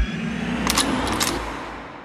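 The tail of a riddim dubstep track dying away. After the last kick drum, a noisy wash with a few crackling clicks about a second in fades steadily toward silence.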